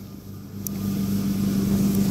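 A steady, low engine hum, like a motor vehicle running nearby, growing louder over the two seconds.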